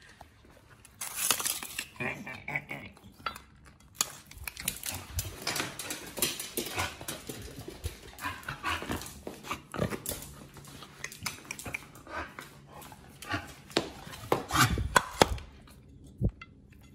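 Pit bull making excited whining and grunting sounds in short irregular bursts as it waits for its bowl of raw food, among scattered sharp clicks and knocks.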